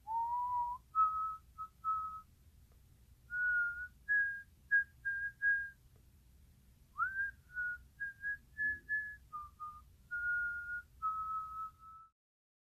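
A person whistling a tune, one clear note at a time, stepping up and down in short phrases with a slide up into the first note and another about seven seconds in. It cuts off at the end.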